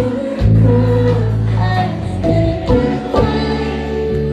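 Live band playing amplified in a club: electric bass holding long low notes, electric guitar and drums, with a woman's voice singing over them. The bass note changes about half a second in and again after three seconds.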